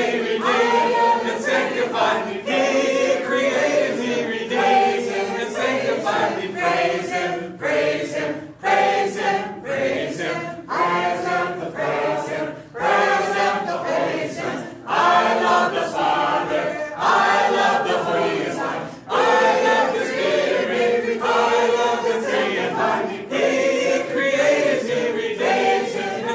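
A congregation of men and women singing a short worship song unaccompanied as a round, two groups overlapping the same melody in continuous phrases.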